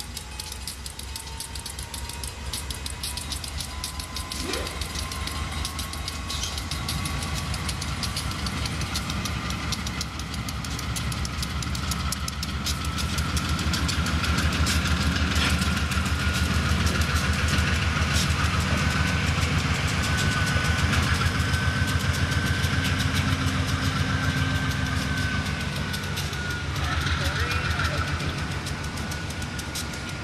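Freight train passing close by: a rapid clatter of steel wheels on the rails under the low running of a GE Dash 8 diesel-electric locomotive, which swells as the locomotive draws level past the middle and then eases. A thin whine rises slowly in pitch through most of the passage.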